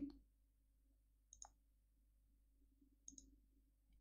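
Near silence with a few faint clicks: a pair about a second and a half in and another pair around three seconds in, over a faint steady room hum.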